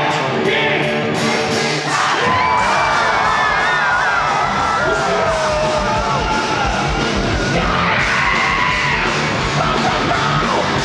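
Live punk rock band playing loud through a large PA. Held electric guitar chords open it, then about two seconds in the drums and full band come in under singing.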